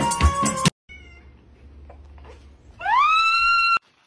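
Background music with a beat stops suddenly, then a domestic cat gives one loud meow that rises in pitch and holds for about a second before breaking off abruptly.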